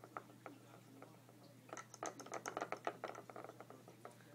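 Plastic bobblehead toy rattling in a quick run of rapid, irregular clicks about two seconds in, as its battery-driven vibrating bed shakes the figure.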